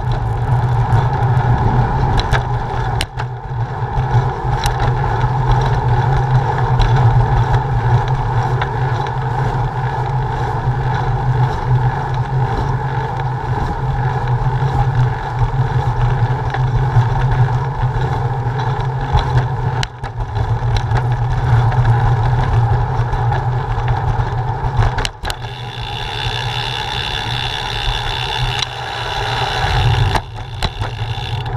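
Steady wind rush and tyre noise from a bicycle rolling along cracked asphalt, picked up by a GoPro on the bike, with a few knocks as the bike goes over bumps. A higher hiss joins in near the end.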